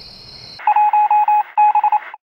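Crickets chirping in a steady high trill, cut off abruptly about half a second in by loud electronic beeping in a single tone: two runs of quick pulses with a short gap between them.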